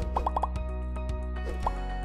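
Short electronic intro jingle for an animated logo, with quick rising 'bloop' pop sound effects: four in a fast run just after the start and another near the end.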